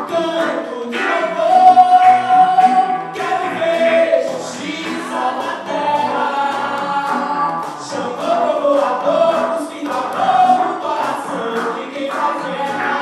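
Live band playing a song, with several voices singing long held notes together over electric guitar and hand-played conga drums.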